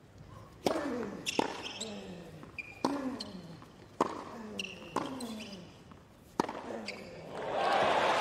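A tennis rally on a hard court: about six sharp racket strikes on the ball, roughly a second apart, each followed by a player's short grunt, with rubber shoes squeaking on the court between shots. Crowd cheering and applause swell up near the end as the point finishes.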